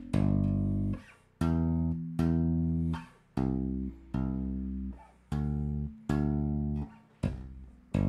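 Five-string electric bass played with the left hand alone, hammering notes onto the frets in the G–E–C–D bass line of a two-hand tapping exercise. About eight low notes come in a slow, even line, each held about a second, some cut off sharply by muting.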